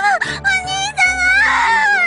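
A young woman's high-pitched wailing cry, broken into several wavering sobs, over background music with low held notes.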